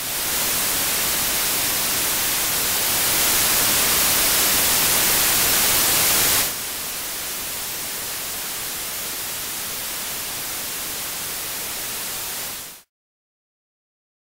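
Analogue television static: a steady hiss that swells slightly, drops to a lower level about six and a half seconds in, and cuts off suddenly about a second before the end.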